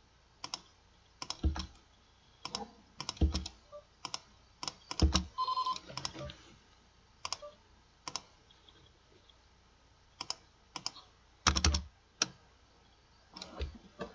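Irregular clicks and keystrokes from a computer keyboard and mouse, some with a dull thud. There is one short beep about five and a half seconds in.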